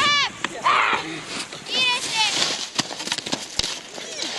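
Two loud shouted calls of encouragement, one at the start and one about two seconds in, over sharp clicks of ski poles planting on hard-packed snow as skiers skate in.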